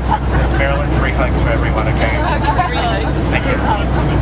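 Steady low drone of a Boeing 737 airliner in flight, heard inside the cabin, under several people talking at once.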